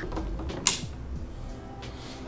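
Hands handling a camera rig, with a sharp plastic click about two-thirds of a second in as the battery is pushed into its mount and latches.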